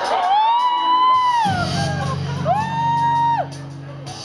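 Two long, high whooping calls, each sliding up, holding one pitch and sliding back down. A steady low electronic backing drone comes in about a second and a half in.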